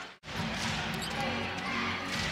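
A basketball being dribbled on a hardwood court over steady arena crowd noise. A brief dropout to silence comes just after the start.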